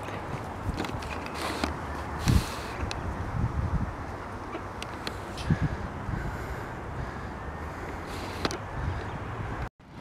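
Steady outdoor background noise with a few faint knocks, cutting off suddenly just before the end.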